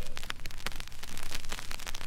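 Surface noise of a 45 rpm record still playing after the music has ended: a dense scatter of clicks and crackle over a light hiss.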